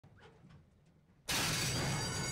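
After a quiet second, a horse-racing starting gate's stall doors crash open all at once, and the start bell keeps ringing as a steady high tone over the clatter.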